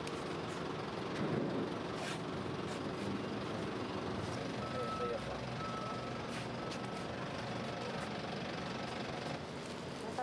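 Steady outdoor background noise with a vehicle engine running. A few sharp clicks, and a faint high beep that comes and goes about halfway through.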